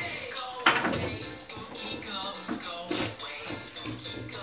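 Dishes and cutlery clattering, with sharper knocks about a second in and near the end, over music playing in the background.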